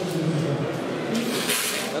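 Men's voices talking, with a short burst of hissing noise near the end.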